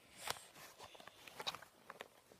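A few faint, soft footsteps on a carpeted floor, with light knocks from the handheld phone as it is carried.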